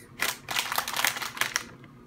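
Foil blind-bag toy wrapper crinkling as it is handled: a quick run of crackles for about a second and a half, then fading.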